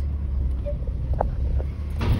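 Low, steady rumble of a car heard from inside its cabin as it creeps forward at low speed.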